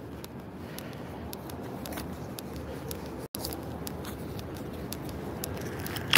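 Footsteps and small clicks from walking on a brick-paved alley, over a steady low outdoor rumble, with the sound cutting out for an instant about halfway through.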